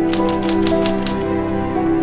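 Background music with held tones, over which a quick run of about seven sharp typewriter-like clicks sounds in the first second or so.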